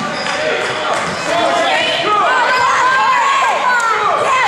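Youth basketball game on a hardwood gym floor: a ball bouncing, with sneakers squeaking and voices calling out in the echoing hall. The squeaks and calls get busier from about two seconds in.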